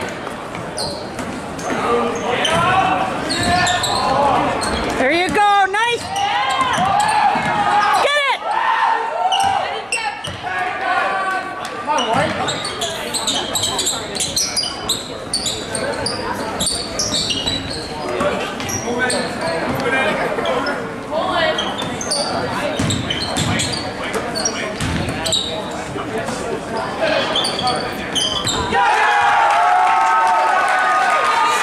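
Basketball game in a gym: the ball bouncing on the hardwood court again and again, with sneakers squeaking in quick bursts about five and eight seconds in, over the chatter of the crowd echoing in the hall.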